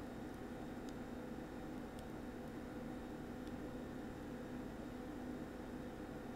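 Quiet room tone: a steady low hum and hiss, with a few faint ticks.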